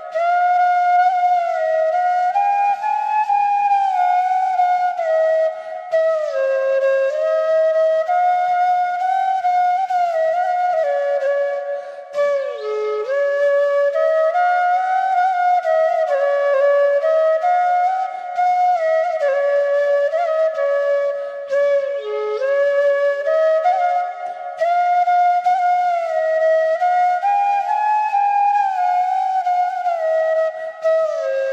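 Solo flute playing a slow melody, its notes sliding smoothly from one pitch to the next.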